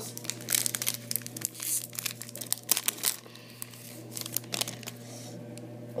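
A Trilogy hockey card pack's wrapper being torn open and crinkled: quick crackles and tearing, densest over the first three seconds, then quieter handling.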